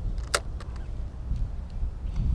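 Wind buffeting the microphone with an uneven low rumble. About a third of a second in comes one sharp click from the spinning reel in hand, followed by a few fainter ticks.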